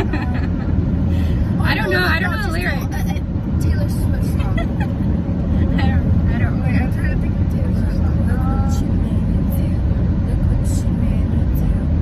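Steady low rumble of road and engine noise inside a car's cabin, with laughter and snatches of women's voices over it, the loudest laughter about two seconds in.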